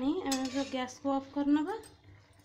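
A voice sounding in short, pitched pieces that bend up and down, with a few sharp clinks of a metal utensil against a steel kadai of cooking vegetables.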